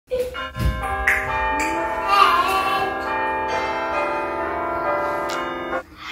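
Bell-like ringing: several held notes sound together and overlap, then all stop at once shortly before the end. There is a low thump about half a second in.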